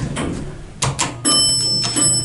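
Two sharp clicks, then the elevator's bell strikes once and rings on with a clear, lingering tone.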